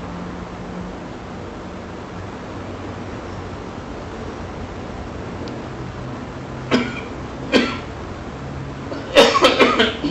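A person coughing: two single coughs about seven seconds in, then a quick run of several coughs near the end, over a steady background hum.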